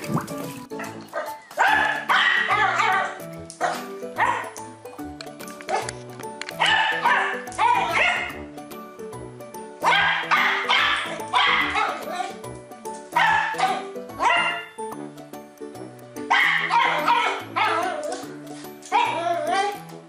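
Yorkshire terrier puppy yapping in about five bursts of high yips over background music with a steady, repeating bass line.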